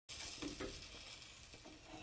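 Faint steady hiss of background room noise with two soft clicks about half a second in.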